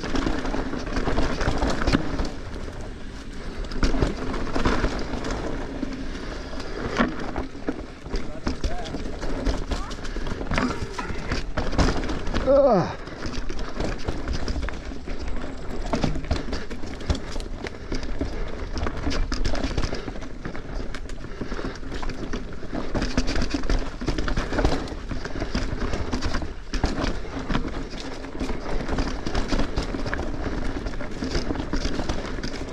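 Mountain bike riding over a loose, rocky trail: tyres rolling and knocking on rocks and the bike rattling, with many sharp knocks throughout. A short squeal that rises and falls comes about halfway through.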